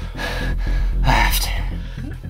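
A person gasping for breath twice, harsh and breathy, over a low, steady music drone.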